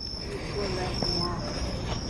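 Crickets trilling in one continuous high note over a low, even rumble of outdoor background noise, with faint distant voices.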